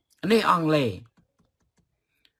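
A man speaks a short phrase in the first half, followed by a few faint clicks.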